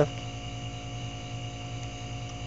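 Steady electrical hum with a faint hiss underneath, holding the same level throughout.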